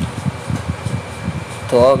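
Induction cooker's cooling fan running steadily, with a faint hum and a low irregular rumble; the cooker is switched on at the 2000 W setting but is not heating.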